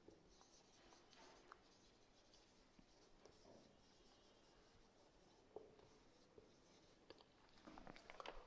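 Very faint felt-tip marker writing on a whiteboard, a scratchy near-silent stroking with a few soft clicks.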